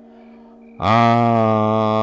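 A man's voice holding one long, low vowel at a steady pitch, starting just under a second in.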